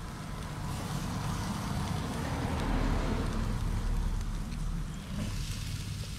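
Lobster tails sizzling as they sear meat-down on a hot charcoal grill grate, under a low rumble of wind on the microphone.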